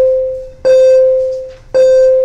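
A clear, ringing musical note at one unchanging pitch, like a struck piano key or chime, sounds again and again: it is struck anew about two-thirds of a second in and once more near the end, and each strike fades away.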